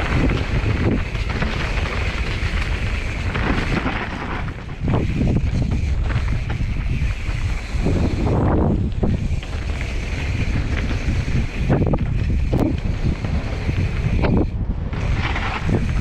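Wind buffeting the microphone of a mountain bike descending a dirt trail, over the steady rumble and rattle of the bike riding across rough ground, with a few sharper knocks along the way.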